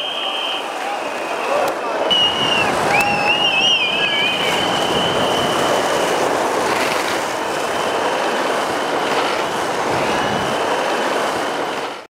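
Skateboard wheels rolling steadily on asphalt, a continuous gritty hiss, with high whistles sounding over it from about two seconds in. The sound stops abruptly at the very end.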